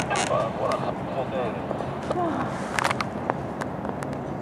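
Wordless whoops and calls from people in a hot-air balloon basket as a skydiver drops away, with a few sharp knocks over a steady background hiss.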